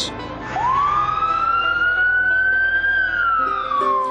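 Fire engine siren: one wail that rises slowly in pitch from about half a second in, peaks near three seconds, then falls away.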